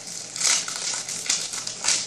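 Clear plastic treat bag crinkling in irregular bursts as it is pulled open at its twisted neck, with the loudest crackles about half a second in and near the end.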